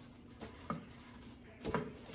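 A round wooden cutting board being handled and set upright against a wicker basket on a kitchen counter: two light knocks, then a louder wooden thump near the end as it is set down.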